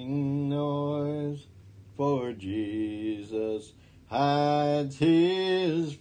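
A man singing a hymn alone and unaccompanied, in slow, long-held notes with short breaks between phrases.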